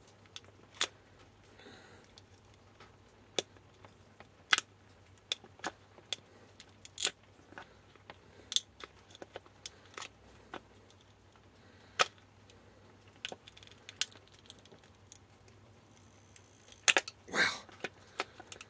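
Screwdriver prying and scraping at hot glue around a fuse holder inside a plastic battery port housing: irregular sharp clicks and scrapes, with a longer, louder scrape near the end.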